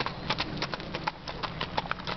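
A standardbred mare's hooves striking hard-packed gravel as she is ridden around a barrel: quick, uneven hoofbeats.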